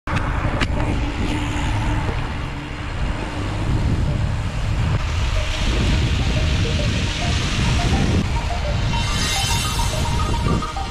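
Outdoor noise with a steady low rumble and hiss, and a faint simple melody of short notes coming in over the second half.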